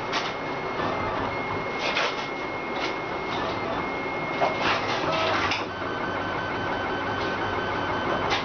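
RapidBot 2.0 3D printer running a print: its stepper motors whine as the hot end lays down plastic, with short clicks as the head moves. The whine is high and breaks off and on at first, then drops to a lower steady pitch about six seconds in as the moves change.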